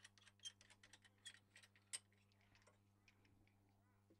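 Near silence: faint irregular clicks, a few a second, that die away about halfway through, over a low steady electrical hum.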